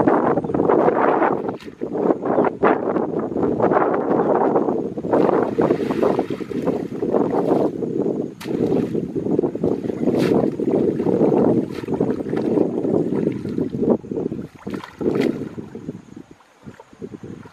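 Pond water sloshing and splashing as people wade through it waist-deep and move a basket and a plastic bucket in it, swelling and dipping unevenly, with a few sharp knocks along the way.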